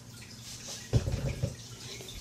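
Handling noise: a short run of low bumps and rustling about a second in, over quiet room tone.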